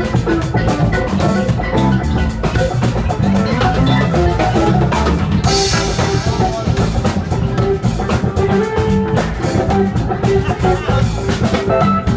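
Band jamming: a drum kit keeps a steady beat under sustained melodic instrument lines.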